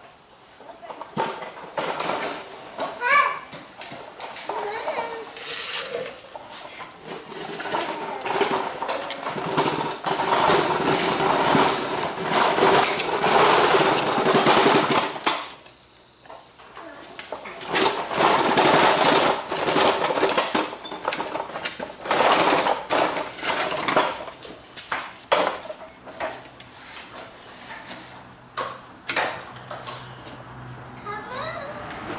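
Hand work with a screwdriver on a small Tecumseh engine's carburetor: scattered clicks and knocks of metal tools, with two long stretches of loud rustling noise. A steady high insect drone runs underneath.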